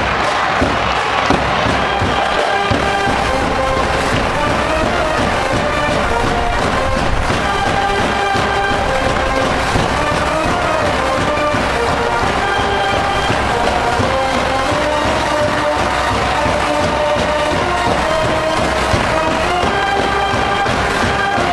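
School brass band in the stands playing a cheering tune, with a drum beat under the horns.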